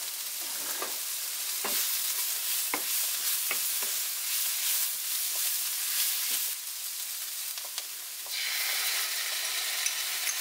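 Jackfruit and sliced onions sizzling in a frying pan while a wooden spoon stirs and scrapes through them, with scattered clicks of the spoon against the pan. The sizzle dips for a moment, then comes back fuller about eight seconds in.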